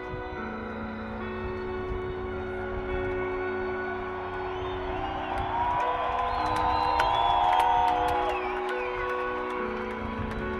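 Slow, sustained ambient keyboard chords held and shifting every second or two, while a stadium crowd cheers, whoops and whistles, swelling loudest in the middle.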